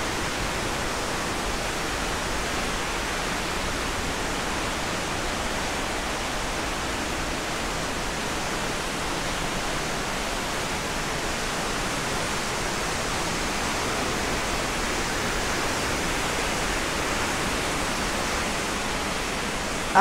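Steady rush of falling water: an even, unbroken noise that stays at one level throughout.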